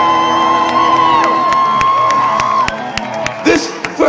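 A live band with a horn section holding a final chord that rings on with sharp hits over it and stops about two-thirds of the way through, followed by the crowd cheering and whooping.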